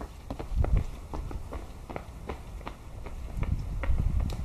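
Quick, irregular running footsteps of two people on a concrete sidewalk, a few steps a second, over a steady low rumble.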